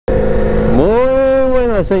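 Motorcycle engine running at a steady road speed with wind noise on the rider's camera microphone; a man's drawn-out called greeting starts about a second in over it.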